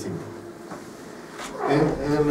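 A man's voice: a word ends at the start, then a short pause, and about one and a half seconds in a drawn-out, pitched vocal sound begins.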